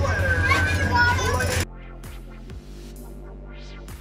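Children's voices calling out over a steady low hum, cut off abruptly about one and a half seconds in by electronic background music with a steady beat.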